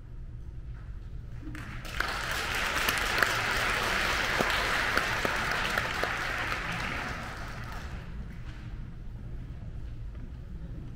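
Audience applauding: the clapping starts about two seconds in, swells quickly, and dies away after about six seconds.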